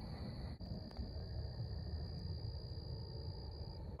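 Crickets trilling steadily at one high pitch on a warm night, over a low rumble of handling noise, with a single click about half a second in.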